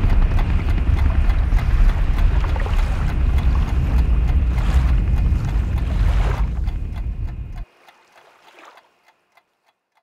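Loud, steady rush of wind and water on a sailing boat under way, heavy in the low end, cutting off suddenly about seven and a half seconds in and leaving only a few faint clicks.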